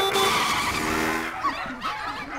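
Cartoon sound effect of a motor scooter peeling out and speeding off. A sudden tire-screech rush fades away over about a second and a half.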